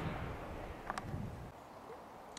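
Faint outdoor background noise with a single brief click about a second in.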